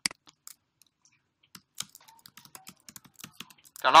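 Typing on a computer keyboard: a run of quick, irregular keystroke clicks, thickest in the second half.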